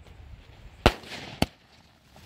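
Fireworks going off: two sharp bangs about half a second apart, the first a little under a second in.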